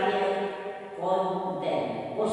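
An elderly woman speaking Czech at a lecture, her phrases drawn out with held syllables.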